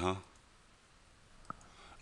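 A single computer mouse click about one and a half seconds in, against faint room tone.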